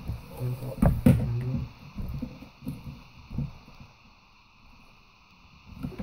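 Handling noise from a disassembled HP Notebook 15 laptop: two sharp knocks about a second in, then scattered lighter clicks and taps that die away in the second half.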